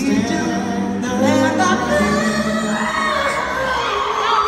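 Male vocal quartet singing a cappella through microphones: a held low bass note under close harmony, with a lead line that bends and rises near the end.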